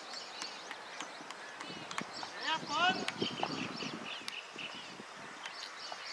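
Outdoor ambience of birds chirping and calling throughout, with faint distant voices or calls about halfway through.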